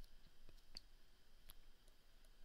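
Near silence broken by a few faint clicks of a stylus tapping on a tablet screen while writing.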